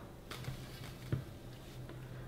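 Quiet room with a low steady hum, and a few soft clicks and taps from hands working dough and setting a roll on a metal baking sheet; the clearest tap comes about a second in.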